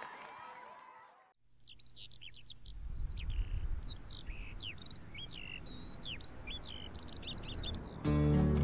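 Several songbirds chirping and singing in a dense run of short, varied calls, starting about one and a half seconds in, over a low steady rumble. Before that, crowd noise fades out to a brief silence.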